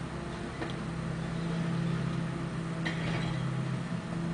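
Rear-loader garbage truck's diesel engine and hydraulics running with a steady low hum while the rear cart tipper dumps a wheeled cart; the hum grows louder about half a second in and eases off just before the end. A brief clatter about three seconds in as the cart is emptied.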